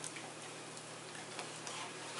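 A dog chewing on a padded mailer envelope: a few faint, irregular clicks and crinkles of the paper in its mouth.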